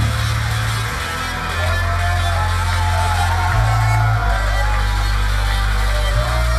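Industrial rock band playing live through the PA: heavy sustained bass notes that change every second or two, with a wavering, gliding lead line above them.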